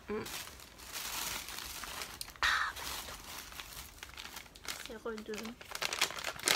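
Paper crinkling and rustling as a gift parcel is unwrapped by hand, with a sharper crackle about two and a half seconds in.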